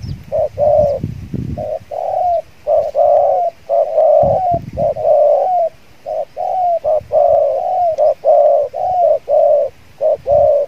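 Spotted dove cooing over and over in short, quick coo notes, about two a second, with only brief pauses. A low rumble comes in under the coos in the first second and a half and again about four seconds in.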